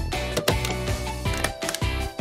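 Background music with a steady beat, over a few sharp clacks of a hand-operated metal staple gun driving staples into fabric.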